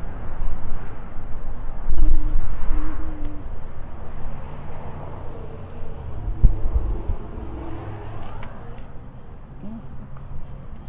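Outdoor street ambience: wind rumbling on the phone's microphone in gusts, strongest about two seconds in and again past six seconds, over the noise of road traffic.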